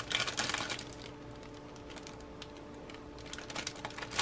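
Plastic model-kit parts trees handled in their clear plastic bags, crinkling and clicking: a quick run of crinkles and clicks at the start, then sparse faint clicks.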